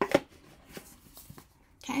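An oracle card deck being drawn out of its cardboard box and handled: a sharp click of card and cardboard about a tenth of a second in, then a few light taps and ticks of the cards.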